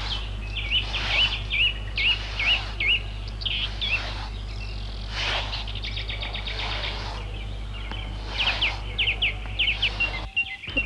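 Birds chirping: a series of short repeated chirps, a fast trill in the middle, and a run of quick down-slurred calls near the end, over a steady low hum.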